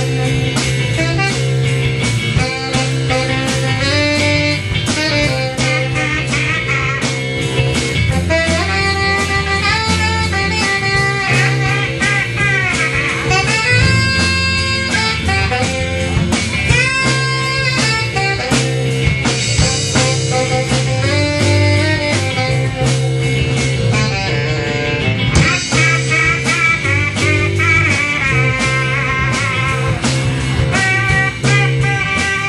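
Instrumental break in a blues-rock song: a lead guitar solo with bending notes over bass and drums.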